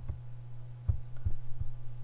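Steady low electrical hum on the recording, with a few soft low thumps scattered through it.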